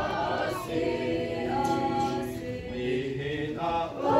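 Mixed youth choir singing together, holding long sustained notes.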